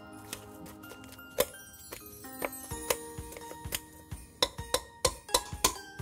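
Light background music, over a series of irregular metallic clinks, more frequent in the second half, from a wire potato masher striking the inside of a stainless steel pot while potatoes are being mashed.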